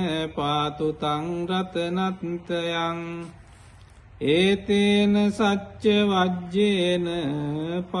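A single voice chanting Pali pirith, Sri Lankan Buddhist protective verses, in long held notes on a slow, wavering melody. The chant breaks off briefly a little past the middle and then resumes.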